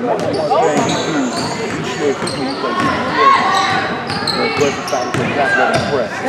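Basketball dribbling and bouncing on a hardwood gym floor, with sneakers squeaking and many indistinct voices talking over one another in the echoing gym.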